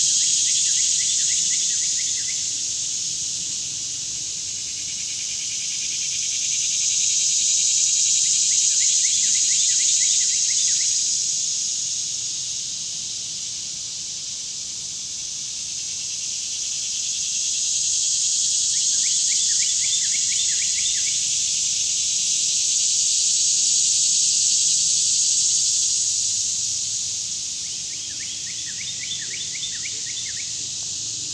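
A chorus of insects droning high and steadily in summer woodland, swelling and fading every several seconds. Four times, a short run of quick ticking notes sounds a little lower than the drone.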